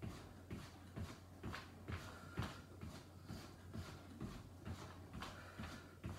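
Sneakered feet marching in place on an exercise mat, soft even footfalls about twice a second, over a steady low hum.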